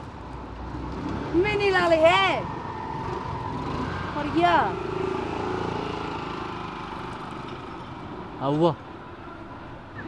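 A few short spoken phrases over a steady background of street traffic noise.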